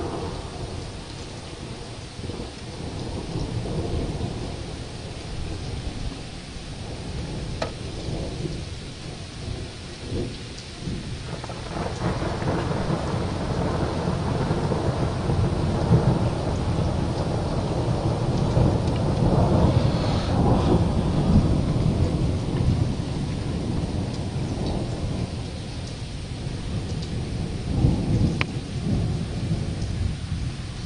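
Thunder rumbling over steady rain from a thunderstorm. A long roll builds about a third of the way in and is loudest around the middle, with another swell near the end.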